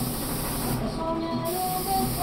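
Paint spray gun spraying primer in a hissing jet that stops for about half a second near the middle as the trigger is released, then starts again.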